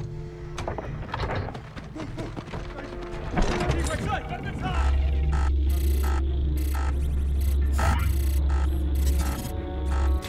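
Action-film soundtrack: dramatic music with a few sharp hits in the first seconds. From about five seconds in, a deep sustained bass rumble runs under stuttering electronic noises that cut in and out.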